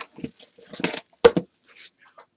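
Hands opening a sealed trading-card box: plastic wrap and cardboard rustling and tearing, with a sharp click a little over a second in.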